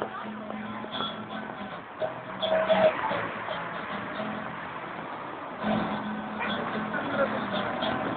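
Busker's guitar playing the blues, with held notes ringing out, over street voices and traffic.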